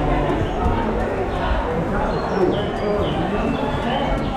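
Indistinct voices of several people talking, with no clear words.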